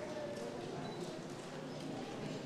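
Faint, indistinct voices murmuring in a large hall, with light irregular tapping.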